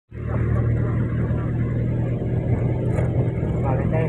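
A vehicle's engine running steadily while driving, heard from inside the cab as a low, even hum with road noise. A voice begins near the end.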